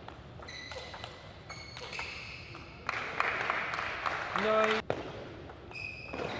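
Table tennis rally: the plastic ball clicks sharply off rackets and table in quick succession, with short squeaks of shoes on the court floor. Near the end of the point there is a brief voiced shout.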